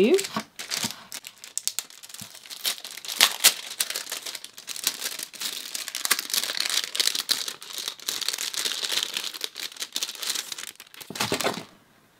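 Clear plastic packaging sleeve crinkling and tearing as a paintbrush is pulled out of it and handled: a continuous rustle with sharp crackles that stops shortly before the end.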